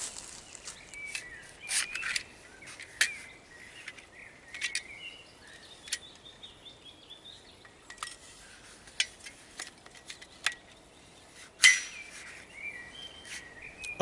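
Agawa Canyon Boreal 21 folding bow saw being unfolded and assembled: scattered metallic clicks and clinks as the frame arms swing out and the blade locks into place, the sharpest about three-quarters of the way through. Birds chirp faintly in the background.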